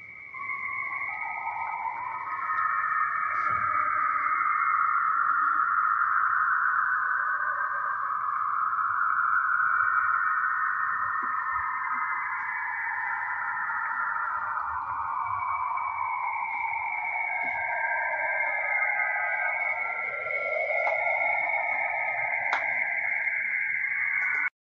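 Cassini spacecraft's recording of Saturn's radio emissions, converted into audible sound: an eerie, hissing band of tones that drifts slowly in pitch, sinking lowest about twenty seconds in before rising again.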